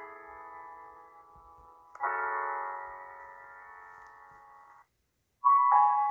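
Soft, slow piano music: a held chord fading away, a new chord struck about two seconds in and slowly fading, then the music cuts off suddenly and, after a short gap, brighter music starts near the end.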